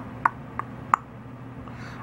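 A steady low hum, with four short, quick clicks in the first second.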